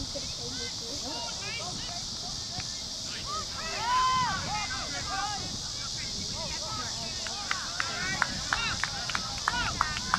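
Distant shouts from players and spectators across a youth soccer field, one held call standing out about four seconds in, over a steady high hiss. A run of sharp clicks comes in the last few seconds.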